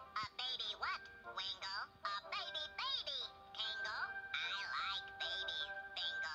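High-pitched, quickly gliding babbling voices of stop-motion cartoon elves over background music, with a held note from about halfway in.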